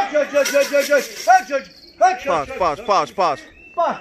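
A man calling his pigeons to the loft with rapid repeated "cut-cut-cut" calls, about six a second. About halfway through they change to a quick run of steeply falling calls.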